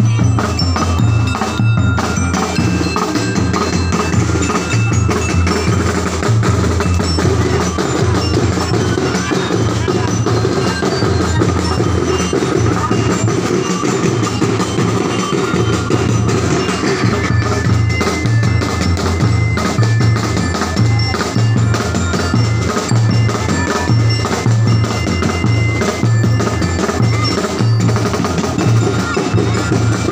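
Live street drum band playing a steady dance beat: bass drums pounding in a repeating pattern with snare drums and hand cymbals, and bright bell-like notes ringing on top.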